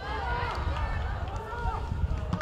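Football players shouting on the pitch during an attack on goal: several overlapping calls rising and falling in pitch, over a steady low rumble.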